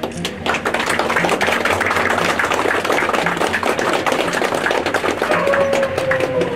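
A group of people clapping: dense, continuous applause.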